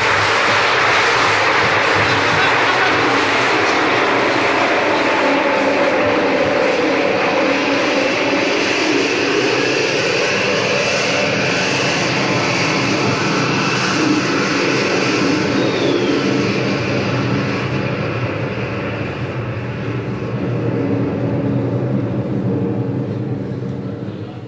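An aircraft passing low overhead: a loud, steady engine roar that fades away over the last several seconds.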